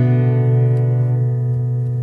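Background music: a held chord that slowly fades.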